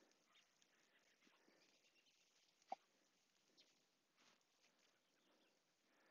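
Near silence, broken once a little before halfway through by a single very short, sharp sound.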